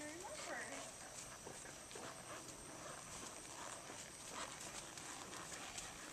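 Faint, soft hoofbeats of a horse walking on sand footing, irregular dull thuds.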